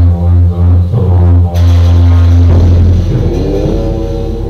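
Tibetan Buddhist ritual music: a loud, deep, steady drone that breaks off about two and a half seconds in and gives way to a busier mix of instruments, with brighter high sound joining from about a second and a half in.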